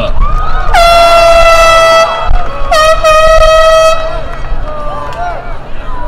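A handheld air horn is blown twice in the crowd, each blast a loud, steady, one-pitch honk of about a second, the second starting about a second after the first ends. Voices cheer around the blasts, celebrating the graduate whose name has just been called.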